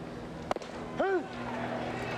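A baseball smacking into the catcher's mitt about half a second in, then a short shouted call, the umpire calling a strike, over a steady stadium crowd murmur.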